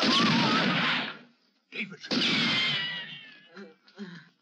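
A person's anguished, wailing cries of pain: a long cry that fades about a second in, a short one, then another long cry whose pitch falls away.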